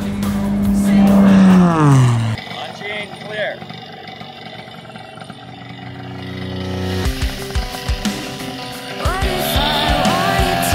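Zivko Edge 540 race plane passing low and fast, its engine and propeller drone dropping steeply in pitch as it goes by, the loudest sound, cut off about two seconds in. Music comes in near the end.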